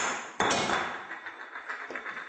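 A hard, clinking knock about half a second in, followed by a rattle that fades over a second or so.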